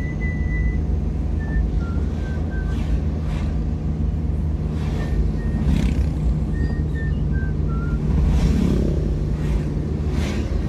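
Vehicle driving along a road: a steady low engine and road rumble with a few brief rushes of passing noise. Over it, a run of short high notes stepping down in pitch, like a whistled tune.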